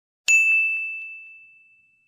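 A single high, bell-like ding sound effect, struck once about a quarter second in, its clear ringing tone fading away over about a second and a half.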